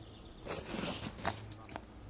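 Faint footsteps and rustling on a dry, leaf-littered forest floor, a few soft crunches.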